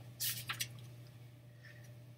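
A short soft rustle and a click in the first half-second, then only a steady low hum.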